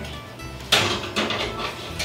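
A bread pan set onto a wire oven rack: one sudden knock and scrape about two-thirds of a second in, dying away over half a second, with light background music underneath.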